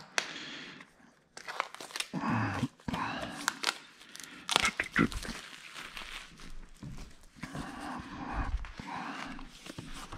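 Small cardboard product boxes and plastic packaging being handled: irregular crinkling and rustling with scattered small knocks and clicks.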